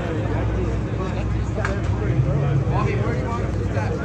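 A steady low engine hum, like a vehicle idling, under indistinct voices talking.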